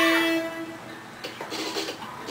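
A talkbox-shaped synth note is held at the end of the song and fades out about half a second in. Faint, uneven background sound follows.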